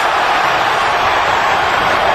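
Arena crowd noise: a steady, loud din of many voices cheering.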